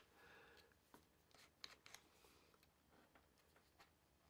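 Near silence with a few faint, scattered clicks as a keyless chuck is fitted and screwed onto the nose of a rotary tool by hand.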